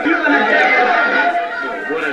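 A classroom of teenagers chattering all at once, many voices overlapping, heard from a television's speaker.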